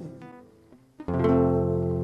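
Acoustic guitar notes dying away with a couple of light plucks, then a chord struck about a second in that rings on: the closing chord of a song.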